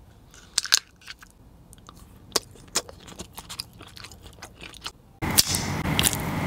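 Close-up chewing and biting of a chocolate candy, with sharp crunch-like clicks scattered through, the strongest a little under a second in and around two and a half seconds. Near the end the sound jumps louder, with a steady hiss and another sharp crunch.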